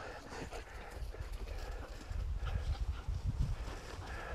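Faint scuffling on grass with irregular low thuds: a dog being dragged backwards by its hind legs and spun around, its paws and a man's feet shuffling on the ground.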